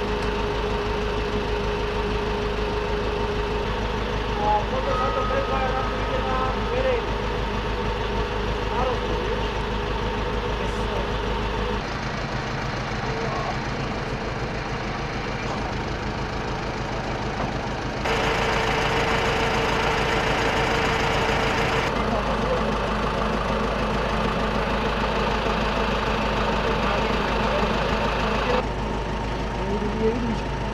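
A truck engine idling steadily, with people talking in the background. The background sound changes abruptly several times.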